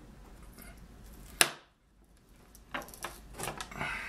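One sharp knock about a third of the way in, then a run of lighter taps and clatter from wooden-handled sculpting tools being handled and set down on a wooden work board.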